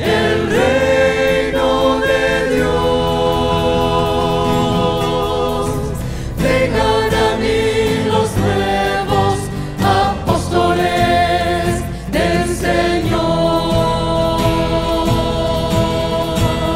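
A choir of men's and women's voices singing a slow devotional hymn with guitar accompaniment, the notes held long with a slight waver.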